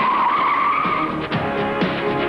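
Car tyres squealing for about a second as the car pulls away, over a rock song.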